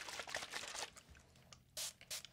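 Crackly, scratchy handling noises close to the microphone for about a second. Near the end comes a short hiss from a spray bottle, the first of a series of short sprays.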